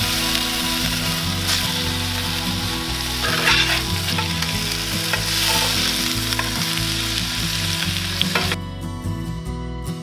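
Beef burger patties sizzling loudly on a hot cast-iron griddle over charcoal while a metal spatula flips and presses them. The sizzle cuts off suddenly near the end.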